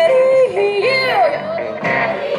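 A female singer yodeling, her voice jumping quickly between high and low notes and gliding up and down, backed by guitars in a live country band.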